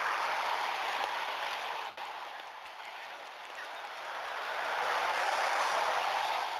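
Steady rushing noise of road traffic, dipping about two seconds in and swelling again toward the end.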